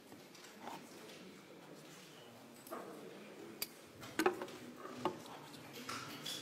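Quiet room noise in a meeting room with faint background murmur and a few short, sharp clicks and knocks, the clearest about three and a half and four seconds in.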